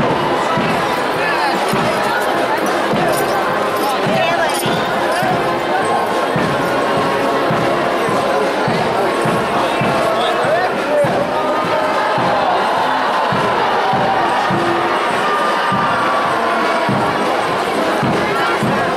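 Marching procession crowd: a dense mix of voices and music over a steady run of low thumps.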